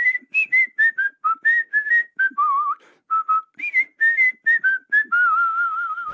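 A person whistling a tune: a quick run of short notes with a few slides between them, ending in one long note held with a vibrato.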